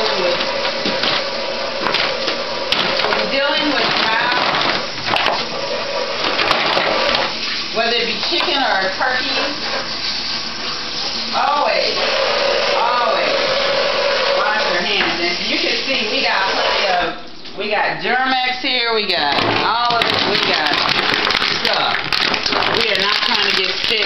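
Kitchen sink tap running in a steady, loud rush while hands are washed under it, with muffled voices over it. The water drops away briefly about two-thirds of the way through.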